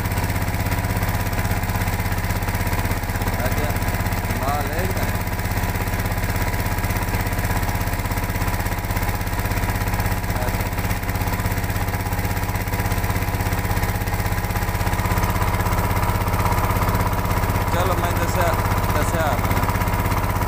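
A boat's engine running steadily at constant speed, a loud even drone with a deep low hum.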